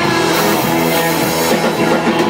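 Rock band playing live and loud, with guitar and drum kit, a dense, continuous wall of sound.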